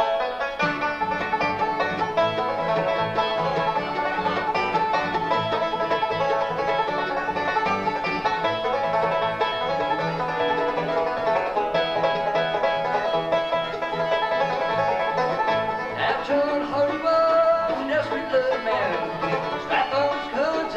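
Acoustic bluegrass band playing an instrumental passage: five-string banjo lead over flat-top guitar, mandolin and upright bass, with the fiddle also playing.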